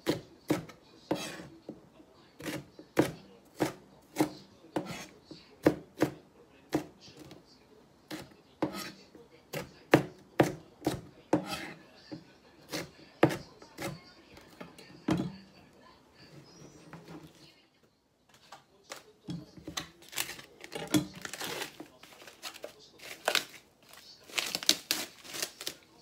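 A kitchen knife slicing green peppers on a plastic cutting board: a steady run of sharp knocks, about two a second, as each stroke hits the board. After a short pause, the last several seconds turn to a busier jumble of clicks and rustles as a plastic-wrapped tray of sliced pork is handled.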